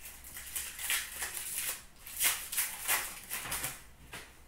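2016-17 Upper Deck Series 2 hockey cards being flipped through by hand: a run of quick, crisp card-on-card flicks and slides, about ten in all.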